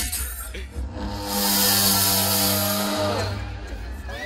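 Right-channel balance-check test sound from a large outdoor PA system: a held, buzzing synthesized tone with a deep bass rumble. It starts about a second in and fades away after about two seconds.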